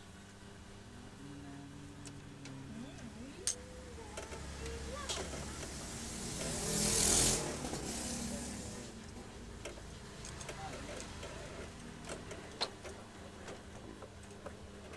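A few sharp clicks of plastic and metal copier-feeder parts being handled. A motor vehicle passes, growing louder and then fading, loudest about seven seconds in.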